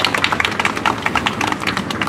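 A small audience applauding: scattered hand claps, each clap distinct, with no music.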